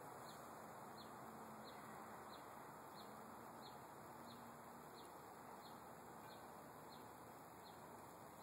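A bird giving a short, high chirp over and over, evenly spaced at about three every two seconds, faint over a steady background hiss.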